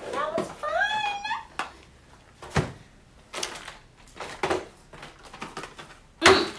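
Classroom supplies being set down and stacked on a wooden table: a series of separate knocks and thuds, the loudest about two and a half seconds in. A short wordless vocal sound comes first.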